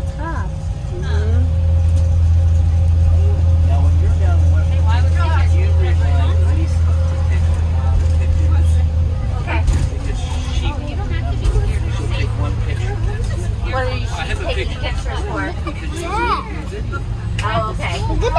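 School bus engine and road noise heard from inside the cabin, a low drone that grows louder about a second in and eases off after about nine seconds, with passengers' chatter over it.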